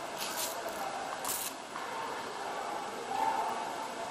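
Indoor swimming-pool hall ambience with faint, indistinct voices, and two brief hissing rustles about a quarter of a second and a second and a quarter in.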